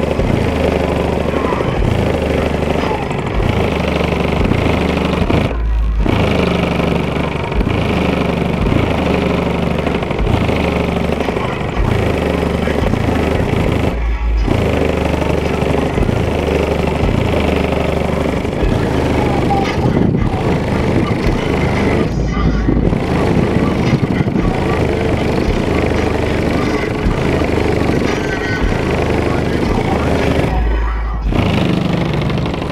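Bass-heavy music playing loud through a truck's car audio system with two 18-inch subwoofers, heard from outside the vehicle. The deep bass is strong throughout, and about every eight seconds the rest of the music drops away briefly, leaving only the lowest bass notes.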